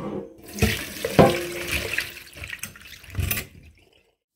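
Water poured out of a glass bowl into a stainless steel sink, splashing through a steel steamer basket, with a few sharp knocks as the artichoke pieces drop onto the metal. The pouring stops about half a second before the end.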